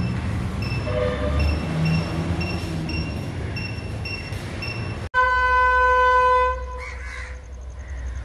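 Low rumbling background with a short high beep repeating about twice a second. Then, after a sudden cut, a single loud, steady train horn blast lasting about a second and a half, followed by a brief bird call.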